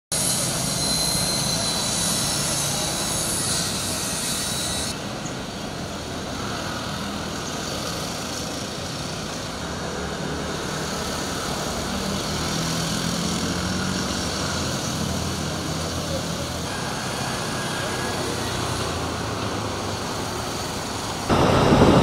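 City street traffic, mostly motorcycles with a few cars, running along the road as a steady wash of engine and tyre noise. The sound cuts abruptly to a different take about five seconds in. Near the end it jumps to a louder rushing noise.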